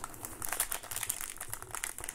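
Gold foil trading-card pack crinkling as it is handled and pulled at to open, a rapid run of small crackles.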